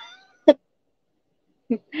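A woman's high-pitched laugh trailing off, then a short word, a silent pause, and speech starting again near the end.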